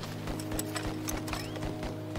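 A film score holds a steady low chord. Over it comes a run of short knocks, about four a second, with a brief rising whistle about one and a half seconds in.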